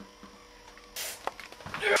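Quiet room tone with a short rush of noise about a second in, then a single spoken word near the end.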